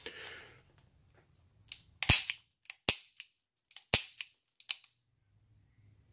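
Ruger GP100 .357 Magnum revolver being dry-fired: the hammer falls with a sharp metallic click about three times, with lighter clicks of the action between them.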